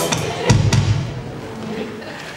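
Roland electronic drum kit played through the PA, ending on a loud accented hit with bass drum about half a second in that rings and fades away.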